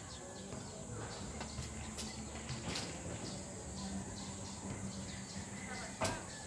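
Wind rumbling on the microphone, with a few light clicks as clothes hangers are hooked onto a drying rack.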